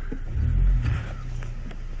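Ford Ranger 2.3 pickup running on a gravel road, heard from inside the cab as a low engine and road rumble that swells briefly about half a second in.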